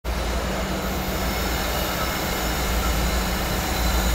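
Steady low diesel rumble of an approaching freight train's GE ES44AC locomotives.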